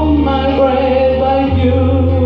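A woman singing a long held note with a slight waver into a handheld microphone, over an instrumental backing track whose bass note changes about three-quarters of the way through.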